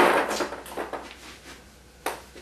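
A table tennis ball struck hard with the bat on a heavy-spin serve: one sharp crack at the start that rings briefly in the small room, followed by a few faint light taps of the ball.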